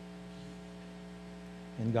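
Steady electrical mains hum, a set of unchanging tones, with a man's voice starting near the end.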